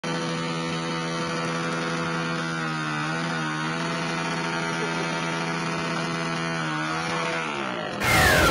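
Dirt bike engine held at high revs while the rear wheel spins in the dirt. It gives a steady buzzing drone whose pitch dips briefly twice and then falls away near the end.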